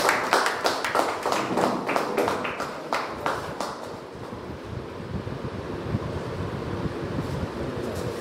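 A small group of people clapping for about the first three and a half seconds, the claps thinning out and stopping, leaving low room noise.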